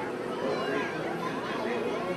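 Crowd chatter: many people talking at once, with overlapping voices and no single speaker standing out.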